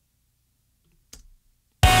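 Near silence, then a single short click about a second in. Just before the end, a rock song mix with acoustic guitar starts playing abruptly and loudly, with the transient processor bypassed so the dead-stringed acoustic guitar is heard without added pick attack.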